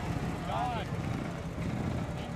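A golf cart drives past with a steady low motor rumble. A short voice call rises and falls about half a second in.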